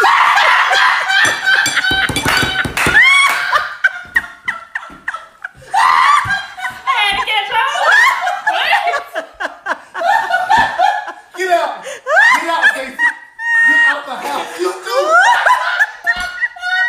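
A girl laughing hard in long fits of high-pitched laughter, set off by the punchline of a joke.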